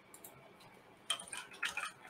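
Computer keyboard keys clicking: a couple of faint keystrokes just after the start, then a quick run of several keystrokes in the second second.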